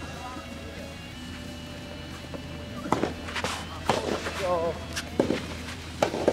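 Soft tennis rackets striking the rubber ball in a rally: several sharp hits from about halfway on, two of them close together near the end, with a short shout among them.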